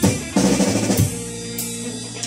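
A children's rock band playing a heavy-metal cover, heard through the stream's video playback: a full drum-kit hit about a third of a second in, then a held chord ringing out under a few lighter drum strikes.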